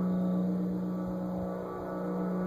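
Steady low engine drone of a blimp's propeller engines heard from the ground, one unwavering pitch with overtones above it.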